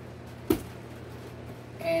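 A single short knock about half a second in, over a steady low electrical hum.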